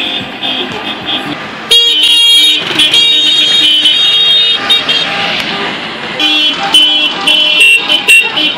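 Several car horns honking in celebration over the sound of street traffic: long held blasts, then short repeated toots near the end.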